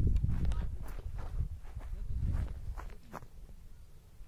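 Footsteps walking on a grassy slope, a series of soft irregular steps over a low rumble that fades toward the end.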